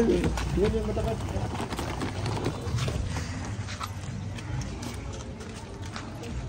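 Footsteps on a dirt lane with faint voices in the background, mostly in the first second.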